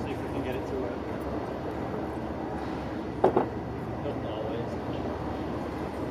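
Railway station platform ambience: a steady rumble from a train standing at the platform, with distant voices and a brief sharp sound about three seconds in.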